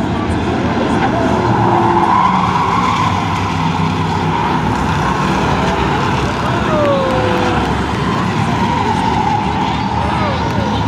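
A pack of short-track stock cars racing through a turn of a paved oval, many engines running together. The engine noise is loudest about two seconds in.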